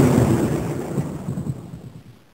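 Thunder rumbling and fading away: the dying tail of a thunderclap, with a few small crackles about a second in, until it dies out.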